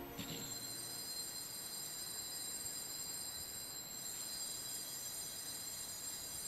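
Faint, steady high-pitched ringing of altar bells as the consecrated host is raised at the elevation.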